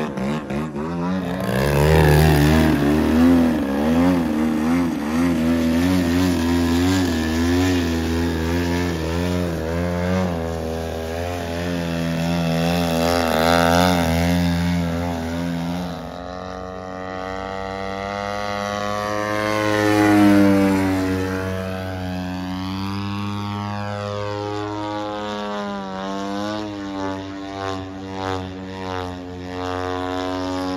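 Radio-controlled model airplane engines buzzing in flight, the pitch rising and falling with throttle and passes. The sound changes about halfway through, and the loudest moment is a plane swelling past about two-thirds of the way in.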